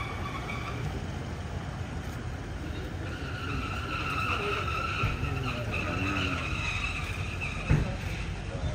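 Large SUVs in a slow motorcade rolling over paving with a low rumble; from about three seconds in a steady squeal rises from the wheels of a vehicle easing to a stop. A single sharp thump comes near the end.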